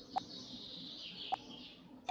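Two faint sharp clicks about a second apart, from working a computer while posting a link into a chat, over a faint high hiss.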